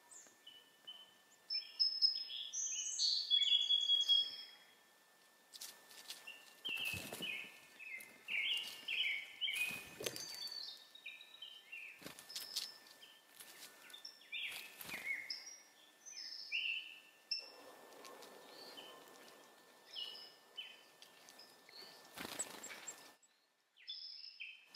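Several small songbirds singing and calling outdoors, a busy run of short chirps and trills, with a few sharp knocks or taps among them. A faint steady high tone runs underneath.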